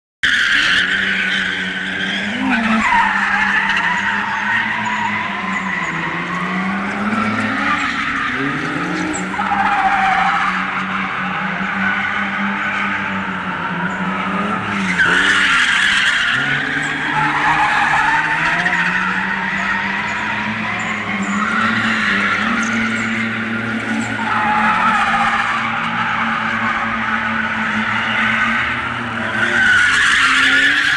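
Toyota Chaser JZX100's straight-six engine revving up and down while drifting, with the tyres squealing almost continuously as the car slides around in circles.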